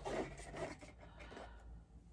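Rustling and light scraping of a cardboard dessert-kit box being handled and moved aside, mostly within the first second.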